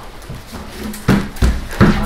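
A person laughing in three short bursts about a third of a second apart.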